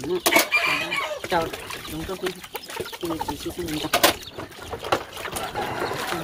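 Chickens clucking, with two sharp clinks of plates being washed and water running into a basin.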